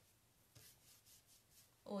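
Faint, quick repeated strokes of a paintbrush dry-brushing paint onto a painted wooden dresser drawer, a few scratchy strokes a second.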